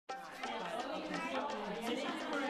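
Several women talking at once, overlapping chatter.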